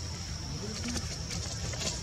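Outdoor background: a steady high-pitched drone over a low rumble, with faint voices and a few light clicks.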